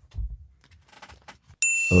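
A brief quiet pause, then about one and a half seconds in a bright, bell-like ding rings out and holds. Music with a heavy bass beat kicks in just before the end.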